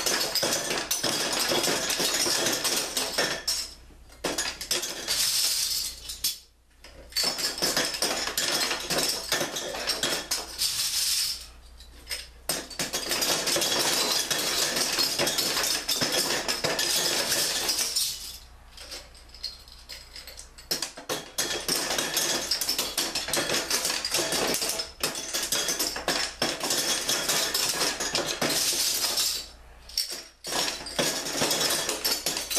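Metal bottle caps clattering and clinking as they are fed in batches down a copper pipe into a glass-fronted shadow box, landing on the growing pile of caps at the bottom. The rattle runs almost without a break, with a few short lulls between batches, the longest about two-thirds of the way through.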